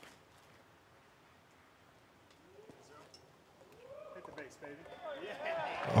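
Spectators' voices rising in reaction to a disc golf drive in flight, starting faint about two and a half seconds in and growing steadily louder toward the end, after a faint single click at the very start.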